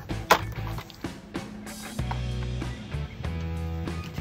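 Plastic clips of a laptop's bottom access cover snapping loose as the cover is pried up by hand, with a sharp click near the start, over background music.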